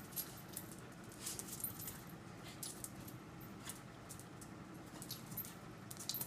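Small dogs' claws clicking and skittering irregularly on a tile floor as they dart and spin about.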